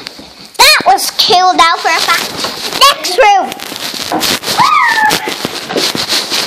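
Young girls squealing and laughing in high, swooping voices while jumping on a bed, with bumps and rustles as the phone is jostled against them.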